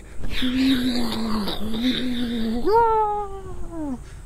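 A man's voice imitating a car engine: a steady buzzing drone for a couple of seconds, then a jump to a higher note that slides steadily down, like a car accelerating away.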